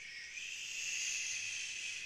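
A man's long, steady hiss through the teeth, snake-like, lasting a little over two seconds.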